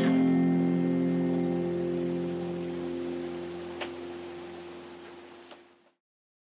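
Final chord of the song on an acoustic guitar, ringing out and slowly fading. There is one faint click near the middle, and the sound cuts off shortly before the end.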